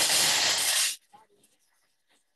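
Thermomix chopping pieces of chocolate at speed 7: a loud rushing noise that cuts off suddenly about a second in.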